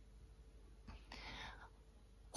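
Near silence, then a woman's faint breath, a soft unpitched sound lasting about half a second, about a second in.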